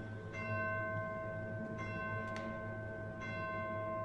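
An orchestral tubular bell tolling slowly, three strikes about a second and a half apart, each left ringing over low held notes from the orchestra: the midnight bell of the gallows-field scene.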